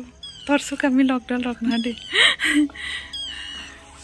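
People laughing: a run of short laughing bursts over the first two seconds, then a higher, breathier burst of laughter a little after two seconds, dying away.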